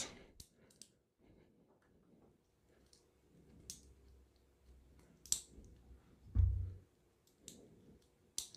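Faint, scattered small metal clicks as miniature dummy rounds are pressed one at a time into the magazine of a 1:3 scale die-cast 1911 pistol model. The sharpest click comes about five seconds in, followed by a dull low thump from handling a little after six seconds.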